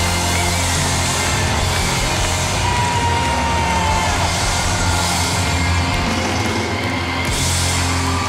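Loud rock music with a heavy, steady bass and a dense, hissy top; the high part cuts out shortly before the end.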